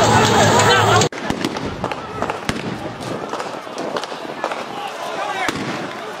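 Loud crowd shouting, cut off abruptly about a second in. Then scattered gunshots from police, sharp single cracks about a second apart, over fainter shouting voices.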